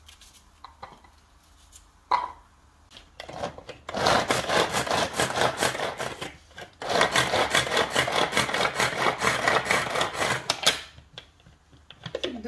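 A hand-pulled cord food chopper mincing onion, its blades spinning with a rapid rasping rattle. It runs in two bursts of pulling, about three and four seconds long, with a brief break between them. A few light clicks come before the first burst.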